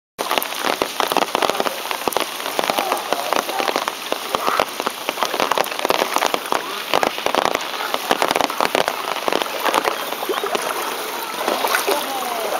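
Rain falling on standing floodwater: a dense, irregular spatter of small drop impacts at a steady level.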